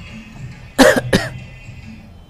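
A person coughing twice in quick succession, about a second in, loud and close to the microphone.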